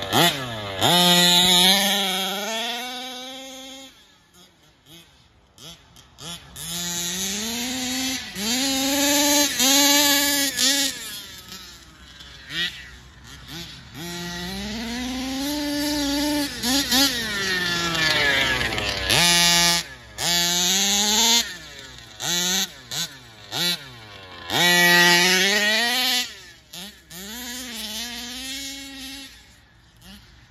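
HPI Baja 5B petrol RC buggy's small two-stroke engine, geared 19/55, revving hard in repeated bursts of throttle, its pitch climbing and falling with each run. It drops back to a quiet idle for a couple of seconds about four seconds in and again around twelve seconds.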